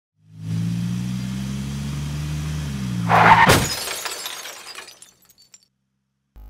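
Music intro sting: a low, steady synthesized drone for about three seconds, then a sudden loud crash that dies away over about a second and a half.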